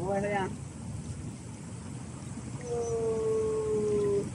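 Two drawn-out, howl-like calls: a short one at the start, then a longer steady one that falls slightly in pitch, held for about a second and a half near the end.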